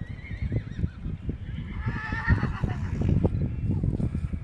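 Horse whinnying: a wavering high call in the first second, then a louder, longer one about two seconds in.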